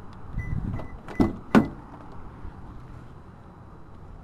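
Toyota Prius door being opened by its handle: two sharp clicks from the handle and latch about a second and a half in, the second louder. A faint high beeping comes just before.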